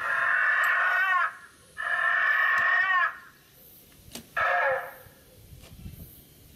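Recorded raptor-dinosaur roar sound effect: three screeching calls, two of about a second each and then a shorter one, each bending in pitch as it ends.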